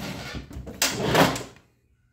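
Handling noise around a metal PC tower case: light rustling, then a louder scrape about a second in.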